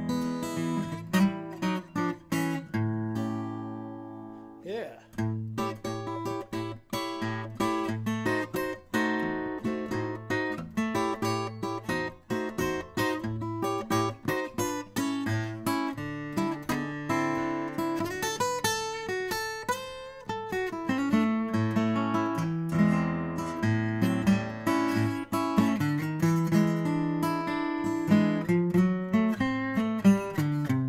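Furch Yellow Series OMc-CR short-scale acoustic guitar, with a cedar top and Indian rosewood back and sides, played fingerstyle: a run of picked notes and chords. About three seconds in, a chord is left ringing and fading before the playing picks up again.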